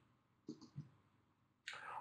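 Near silence with two faint clicks about a third of a second apart, and a faint hiss near the end.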